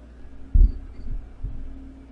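Three dull, low thumps, the first about half a second in and the loudest, the other two weaker within the next second, over a faint steady hum.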